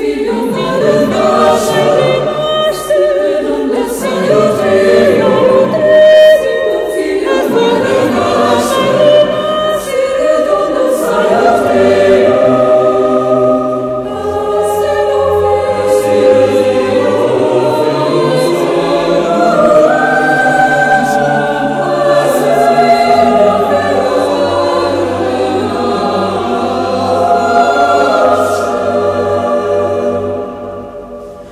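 Mixed chamber choir singing a contemporary choral setting of a Portuguese poem, in dense, sustained, overlapping chords. The sound swells and eases, dipping briefly about halfway through.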